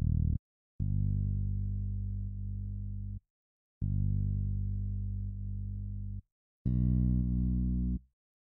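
Bass samples from a hip-hop drum kit previewed one after another, each a sustained low bass note with short silences between them. Two similar notes each last about two and a half seconds and slowly fade. A brighter note with more overtones follows and is cut off near the end.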